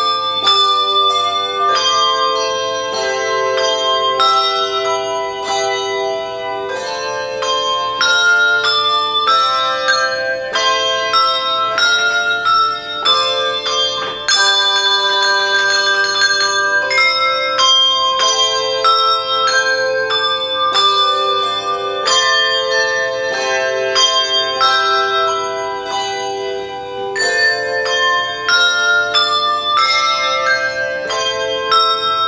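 Handbell choir playing a festive piece, with struck handbell notes ringing on in changing chords and a stretch of rapid, dense ringing about halfway through.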